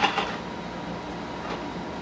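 Steady room noise with no clear event, after a brief crinkle of a wrapped chew bar package being handled right at the start.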